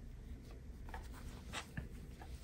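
Crochet hook and thick blanket yarn rubbing and rustling as stitches are worked. A few soft scratchy ticks fall about a second in.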